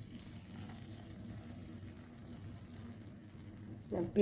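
Faint, steady sizzle and crackle of paniyaram batter cooking in the oiled cups of a paniyaram pan.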